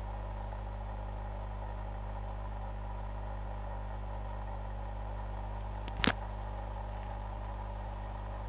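Steady low electrical hum, like mains hum, with a faint hiss in the recording. A single sharp click about six seconds in is the loudest sound.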